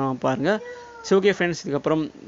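A man speaking, broken about half a second in by one high, drawn-out call of about half a second that rises and then falls slightly in pitch.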